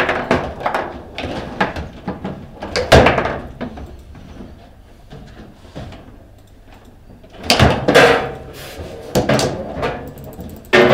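Foosball table in play: the hard ball cracks off the plastic player figures and the table walls, and the rods clack in their bearings as they are spun and slammed. A loud cluster of knocks comes about three seconds in, and a louder flurry near eight seconds.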